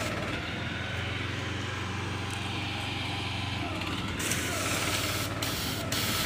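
Fire hose spraying a jet of water in a steady hiss, over the steady low hum of a fire engine's pump running.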